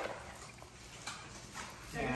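Quiet room background with a few faint, light clicks.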